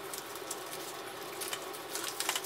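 Blood pressure cuff being wrapped snugly around an upper arm and fastened: soft, irregular rustling and light crackling of the cuff fabric and its hook-and-loop closure.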